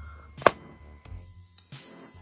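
Cap of a plastic lip balm tube pulled off with a single sharp pop about half a second in, over faint background music.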